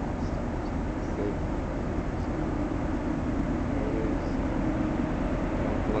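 Approaching train heard through the woods as a steady low rumble, with a faint held drone in the middle.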